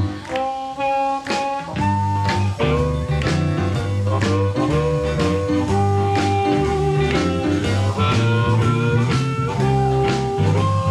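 Live electric blues band playing an instrumental passage: a lead line of held, bending notes. Bass and drums drop out for about the first two seconds, then the full band comes back in.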